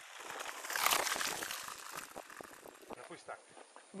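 Mountain bikes rolling past on a dirt and gravel track: a crunching, crackling tyre noise that swells to a peak about a second in and then fades away.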